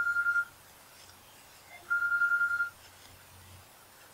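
Electronic telephone ringing: a single steady high tone with a fast warble, heard as two rings, one ending about half a second in and a second, under a second long, about two seconds in.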